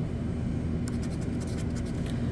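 Scratch-off lottery ticket being scraped with a scratcher tool: short, quick scraping strokes over the ticket's coating, bunched in the second half, over a steady low hum.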